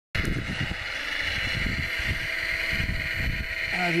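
Steady high whine of a radio-controlled Wedico Cat 966 model wheel loader's electric drive and hydraulic pump working in snow, with wind gusting on the microphone. A voice starts near the end.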